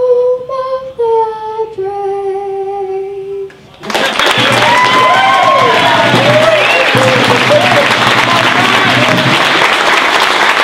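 A young girl singing the closing notes of the national anthem solo, stepping down to a long held last note. About four seconds in, the audience breaks into loud applause with cheers and whoops that carry on to the end.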